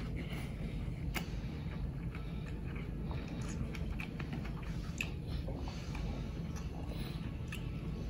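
A person chewing a bite of tomato, faint soft wet mouth clicks over a steady low hum.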